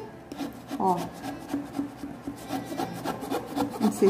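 A ruler's edge scraping and rubbing along quilted faux leather as it is pushed into the inner corner of an MDF box, in a run of short repeated strokes.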